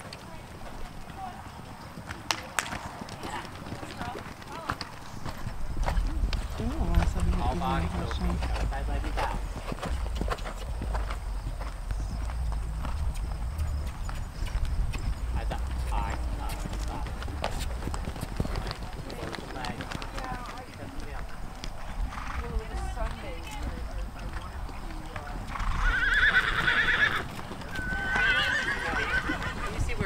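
Horses cantering on a sand arena, their hoofbeats a scattered run of dull knocks, with a low rumble through the middle. Near the end a horse whinnies, a high wavering call heard twice.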